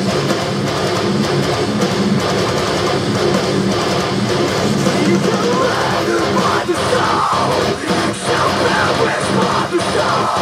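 Distorted electric guitar playing a djent-style metalcore riff through a floor multi-effects processor, loud and without a break.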